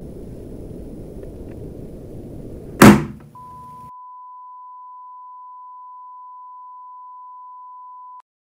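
Film sound design: a low rumbling drone, broken about three seconds in by one sudden, very loud hit that rings briefly. Then a single steady high-pitched beep tone comes in and holds, while the drone dies away about a second later.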